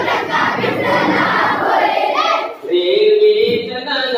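A large group of schoolchildren singing an action song together, loud and dense with many voices. About two and a half seconds in the singing drops briefly, then comes back as a clearer, steadier tune.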